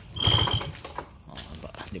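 A start attempt on a two-stroke Yamaha 110 SS scooter engine: a loud half-second burst with a high steady whine just after the start, then light irregular mechanical clicking.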